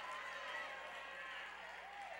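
Faint congregation voices responding in a large church sanctuary, over a low steady hum.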